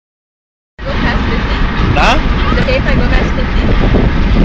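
Steady road and engine noise inside a Smart fortwo's cabin at highway speed, starting under a second in and heaviest in the low rumble.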